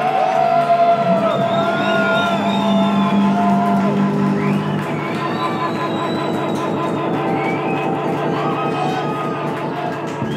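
Indie rock band playing live and loud: electric guitar, bass and drums, with the crowd cheering and whooping over the music.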